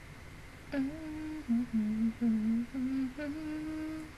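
A woman humming a short tune with her mouth closed, about six held notes that dip lower in the middle and climb back to the starting pitch, beginning about a second in.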